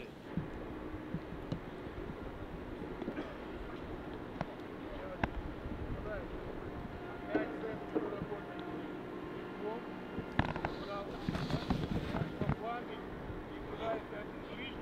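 Distant calls and shouts of players on a football pitch, with a few sharp knocks of the ball being kicked, over a steady low background rumble.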